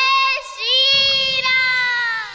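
A child singing long held notes of a Hindi devotional song to Ram. The notes drift gently in pitch, with a brief break about half a second in.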